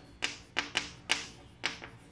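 Chalk on a chalkboard: about five short taps and scrapes as a line of figures and letters is written.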